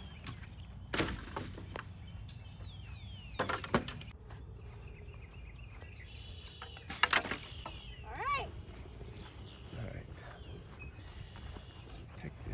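Dead branches and twigs tossed onto a brush burn pile, landing with a few sharp cracking knocks a few seconds apart.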